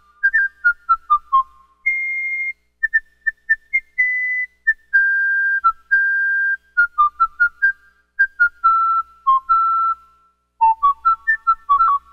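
Moog Minimoog monophonic synthesizer playing a quick high melody, one note at a time, with a pure, whistle-like tone. Short detached notes alternate with a few longer held ones, with a brief pause shortly before the end before the fast notes resume.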